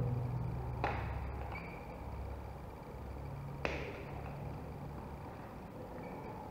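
Two sharp clicks about three seconds apart from hand pliers working on the cable's wire ends, over a faint low hum.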